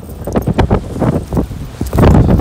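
Strong blizzard wind buffeting the microphone, with blowing snow, in rough irregular gusts and a deep rumble.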